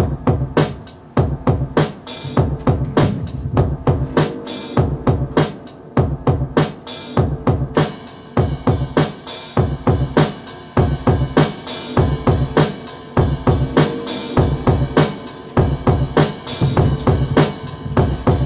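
Akai XR20 drum machine playing a programmed beat of kick, snare and hi-hat hits. A held pitched layer joins about eight seconds in.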